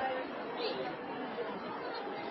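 Low murmur of background chatter from a small crowd in a pause between an interviewee's sentences, with one brief high-pitched sound about half a second in.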